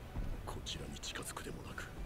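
Faint, whispery speech.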